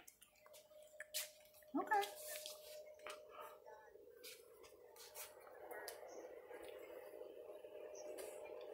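Faint room sound: a woman's voice briefly about two seconds in, a faint steady hum, and scattered light clicks.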